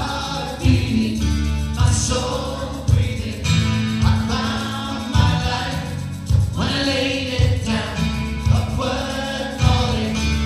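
Live worship band playing a praise song: several voices singing together into microphones over acoustic guitar, a low bass line and a drum kit keeping a beat of about one hit a second.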